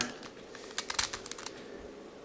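Plastic twisty puzzle, a 5-layer hexagonal dipyramid, clicking and clacking as its layers are turned by hand, with a quick run of small clicks in the middle.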